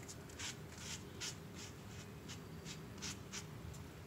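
A piece of cardboard scraped across paper, spreading thick paint in short repeated strokes, about two to three a second. Faint.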